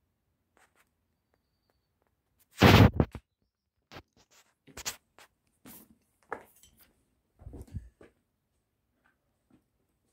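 Footsteps crunching and scraping on loose rubble and grit on a stone floor, irregular, about one a second. The loudest is a heavy crunch about three seconds in.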